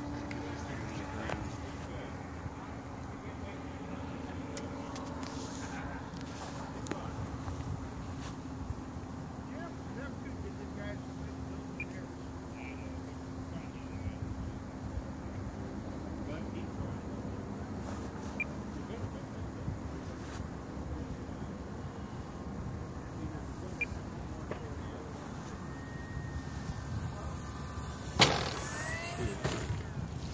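Radio-controlled model airplane's motor and propeller droning steadily in the sky, gradually fading over the first dozen seconds, with wind rumbling on the microphone. Near the end there is a brief, louder pass with a changing pitch as a model comes in low.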